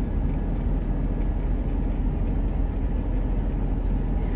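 Inside the cab of a heavy truck cruising on a highway: a steady low engine drone mixed with road noise, unchanging throughout.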